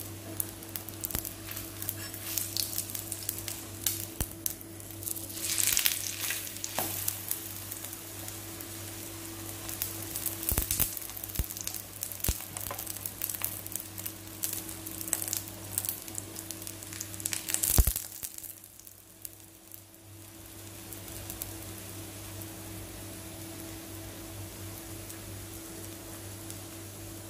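Egg-coated flatbread shallow-frying in oil on a flat tawa, sizzling and crackling with scattered pops and spatula clicks. About two-thirds of the way through there is a sharp knock, after which the sizzle settles to a quieter, steadier hiss.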